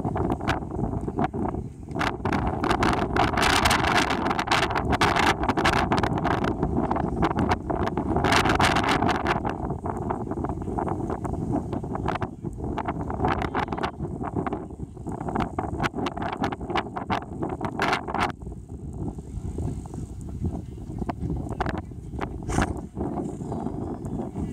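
Wind buffeting the microphone: a loud, rough rumble with crackling gusts, thinning out about three-quarters of the way through.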